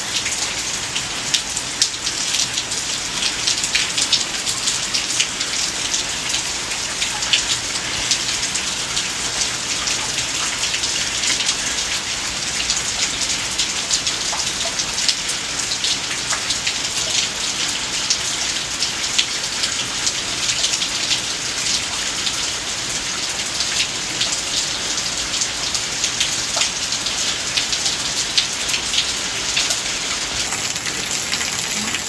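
A heavy downpour of rain: a steady, dense hiss with many separate drops striking close by.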